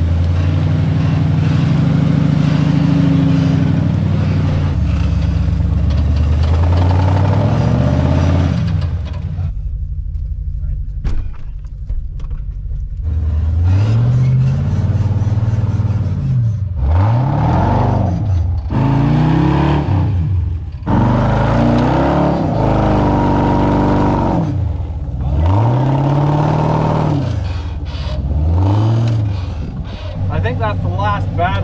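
Off-road wrecker's engine working hard under load as it pushes through a muddy creek and climbs a steep dirt bank. Over the second half it is revved up and let off again and again, every two or three seconds.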